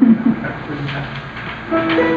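Low murmur, then near the end a ukulele starts playing, its plucked notes ringing out steadily.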